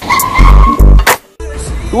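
Scooter tyres skidding as it pulls up: a steady high squeal lasting about a second, over music with two heavy bass hits.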